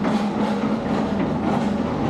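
Long-reach demolition excavator working on a brick building: its engine and hydraulics run steadily with a wavering low tone, and a few knocks of breaking masonry.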